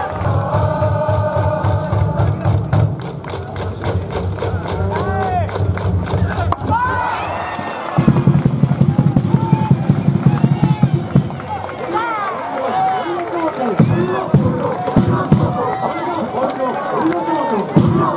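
A cheering section in the baseball stands shouting and chanting in unison, over music with held notes and an even beat. The crowd's voices swell in a dense burst about halfway through.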